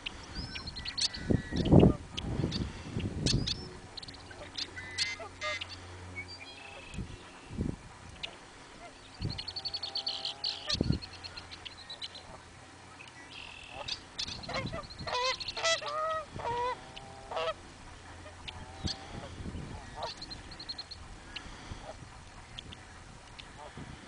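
Canada geese honking, a run of honks in the second half, with higher chirps and trills of small birds in between. Wind gusting on the microphone, loudest in the first few seconds.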